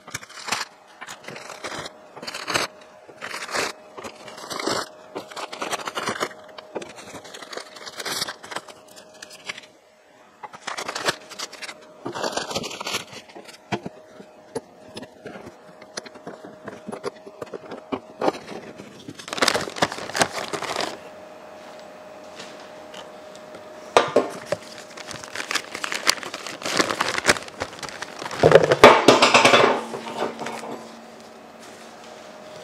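Newspaper rustling and crumpling as steel milling cutters are unwrapped from a cardboard box, with sharp clinks of the cutters being set down on a steel cart. The crumpling is loudest twice, in the middle and near the end, over a faint steady hum.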